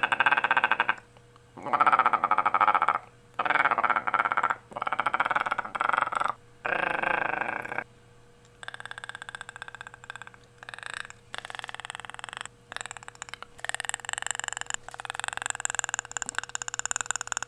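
A person's voice imitating Perry the Platypus's chattering rattle in five loud bursts, then, after a short pause, a quieter run of rapid rattling clicks imitating the Predator's call.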